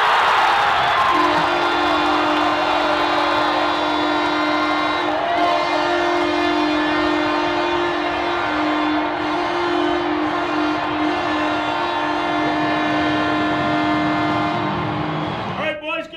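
Arena goal horn blaring over a cheering crowd. It comes in about a second in as one long, steady two-note blast and stops shortly before the end.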